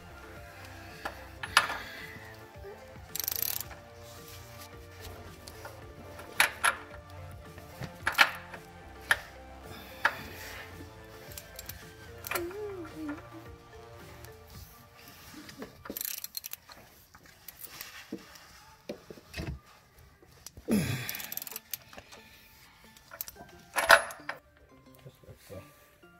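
Scattered sharp metal clinks and knocks of a socket ratchet and steel fittings, as a bolt is fitted through an oil-cooler sandwich plate adapter, over background music that fades out about halfway.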